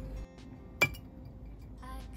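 A single sharp clink a little under a second in, with a short high ring, as a chocolate bar is knocked against a small ceramic plate while being broken apart. Quiet background music plays underneath.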